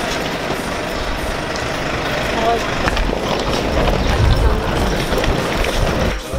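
Street traffic noise with a vehicle engine running close by.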